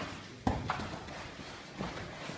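Bodies and bare feet thudding on foam mats during jiu-jitsu grappling in gis: one sharp thump about half a second in, then a few lighter knocks.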